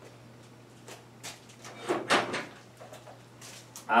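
A few knocks and rattles of a plastic drill-bit case being picked up and handled, the loudest about two seconds in, over a steady low hum.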